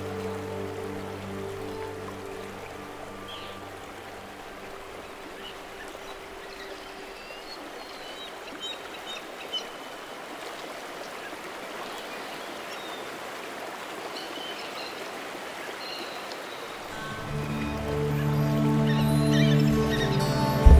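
Soft sustained new-age music tones fade out over the first few seconds, leaving the steady rush of flowing stream water with faint bird chirps. About 17 seconds in, a new piece of held, chord-like music swells in over the water.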